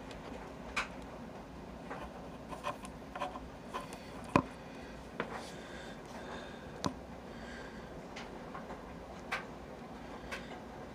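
Handling noise from small objects and a phone being shifted about, with scattered light clicks and knocks, the sharpest about four seconds in and another near seven seconds.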